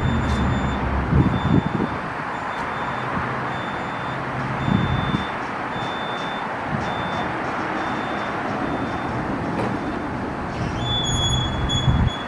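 Parking-garage ambience: a steady low rumble with a high electronic beep repeating a little more than once a second. Near the end the beep turns into one steady tone while the elevator doors close.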